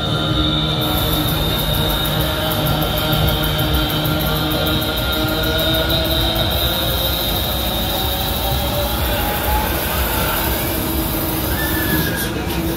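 Voodoo Jumper fairground ride running: a steady mechanical whine of high tones over a low rumble, with one tone rising in pitch in the second half. Loud ride music plays under it.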